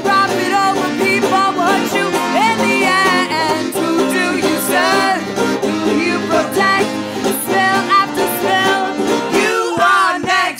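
A woman singing a song, accompanying herself on a strummed banjo, with sustained accordion chords underneath.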